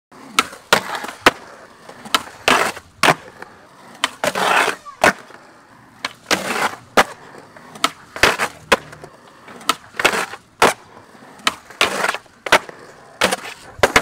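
Skateboard tricks on concrete: repeated sharp pops and landing slaps of the board, wheels rolling between them, and several half-second scrapes of the board grinding along a ledge.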